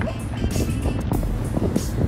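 Steady low rumble of wind buffeting a phone microphone outdoors, with music playing in the background.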